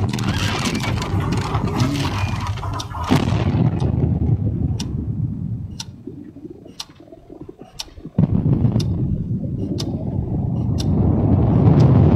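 Dramatic sound effects from a documentary clip. A dense noise dies away about three seconds in, leaving a clock ticking about once a second. About eight seconds in a deep rumble starts suddenly and builds toward the end, standing for the earth's deep breaking open.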